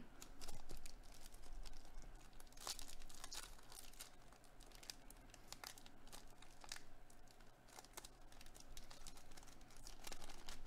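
Foil wrapper of a Topps Update baseball card pack crinkling and tearing as it is pulled open, a faint scatter of crackles that is busiest in the first few seconds.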